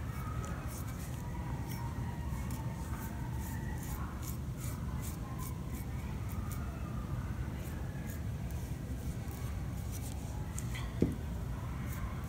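Glaze brush dabbing and stroking on a porous bisque-fired clay bowl: many short, soft scratchy strokes over a steady low room hum, with one sharp tap near the end.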